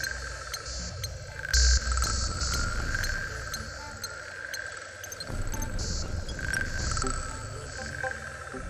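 Ambient space soundscape: a low rumble under short recurring chirps, with a brief louder burst about one and a half seconds in.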